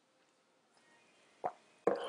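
Near silence, broken about one and a half seconds in by a single short pop. Near the end a person starts to laugh.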